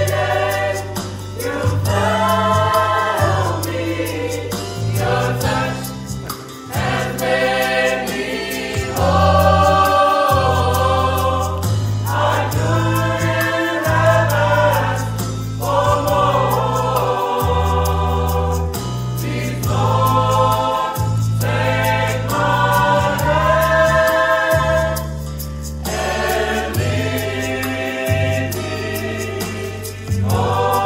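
A youth choir singing a slow gospel song, each phrase held for a second or more, over low sustained notes.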